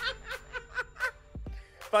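A man's chuckling laughter: quick, evenly spaced pulses about four a second that fade out about a second in. Speech starts just before the end.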